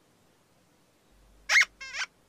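Near silence, then about a second and a half in two short, high-pitched squeaky calls: a quick chirp that rises and falls, followed by a buzzier pitched squeak, like a cartoon character's squeak in a children's TV soundtrack.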